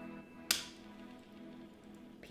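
A single sharp click about half a second in, a finger flicking the plastic arrow of a BeanBoozled jelly-bean spinner, over faint background music.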